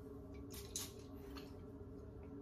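Quiet room tone with a faint steady hum and a few soft, brief ticks or rustles.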